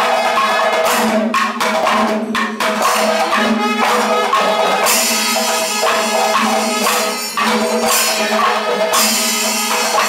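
Kerala panchavadyam temple percussion ensemble playing: dense drum strokes and cymbals over a steady held tone, the cymbals growing brighter about halfway through.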